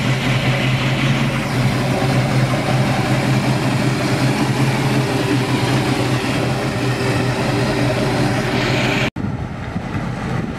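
Chrysler 340 four-barrel V8 in a 1971 Plymouth Barracuda idling steadily with the hood open, with a deep, even exhaust note. A brief break about nine seconds in, then the car's sound carries on a little quieter.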